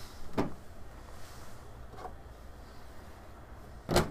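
Quiet handling of a freshly printed plastic drawer as it is taken out of a 3D printer: a light click shortly after the start and a sharper knock just before the end.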